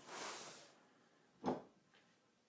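Brief rustle of cardboard box flaps being moved by hand, followed by a short, separate sound about a second and a half in.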